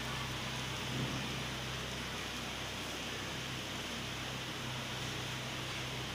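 Steady hiss of a dosa cooking on a hot tawa on the stove, with a steady low hum underneath.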